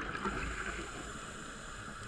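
Scuba diver's regulator breathing heard underwater: a gush of exhaled bubbles trailing off in the first half second, then a quieter stretch before the next breath.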